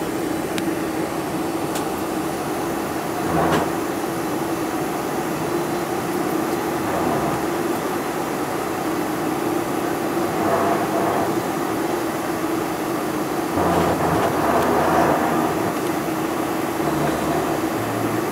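Cabin noise of a Boeing 747-400 taxiing with its GE engines at low thrust: a steady hum with a constant tone and cabin air rush, swelling louder a few times.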